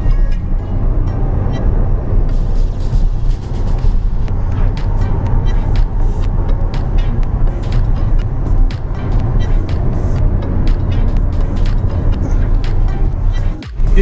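Steady low rumble of a Peugeot car driving at motorway speed, heard from inside the cabin, under music with a steady beat that comes in about two seconds in.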